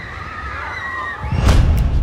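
Roller-coaster riders screaming, heard as several overlapping wavering high cries over a low rumble. About one and a half seconds in, a loud whoosh with a deep rumble swells up.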